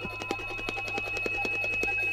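Free-improvised electronic music from electric organ, electric piano and synthesizer. A single high electronic tone is held steady over a low hum, with a scatter of short, irregular struck notes.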